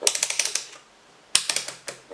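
Rotary range selector dial of a DT-9205A digital multimeter being turned, its detents clicking rapidly through positions in two quick runs about a second apart.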